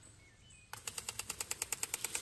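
Rapid, even mechanical clicking, about a dozen clicks a second, starting about two-thirds of a second in: the ratcheting tick of an impact lawn sprinkler at work. A few faint bird chirps are heard before it.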